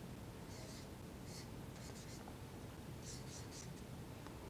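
Blue felt-tip marker writing on a white board, a few short, faint scratching strokes as the word "Soln" is written.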